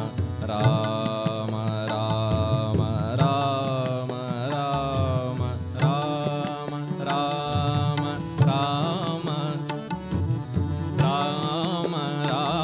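Devotional bhajan music: tabla and harmonium accompany a melody with sliding, wavering notes, and the small taal cymbals strike about once a second to keep the beat.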